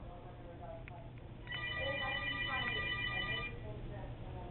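Mobile phone ringtone: several steady electronic tones, some pulsing on and off, start about one and a half seconds in and stop about two seconds later.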